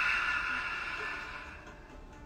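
A woman's long, deliberate breath out through the mouth, like a sigh, taken as part of a guided breathing meditation. It is loudest at the start and fades away over nearly two seconds.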